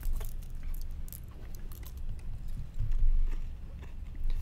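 Scattered light clicks and small rattles from hard-shelled Reese's Pieces candies being handled and poured out into the hands.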